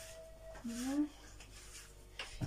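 A woman's voice makes one short murmured sound, half a second to a second in; otherwise only faint room sound.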